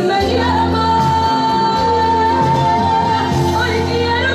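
Amplified female singing voice holding one long note for nearly three seconds over loud accompanying music with a steady bass line.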